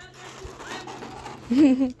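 Soft rustling and handling noise for about a second and a half, then a short burst of a voice laughing.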